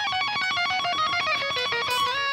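Electric guitar playing a fast two-handed tapping run of single notes, about eight to ten a second, stepping down in pitch and settling on a held note near the end. It is the solo passage played the way it was meant to go.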